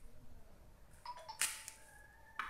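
Pomegranate rind cracking and tearing as the fruit is pulled apart by hand: a few faint clicks and a short crackle about one and a half seconds in.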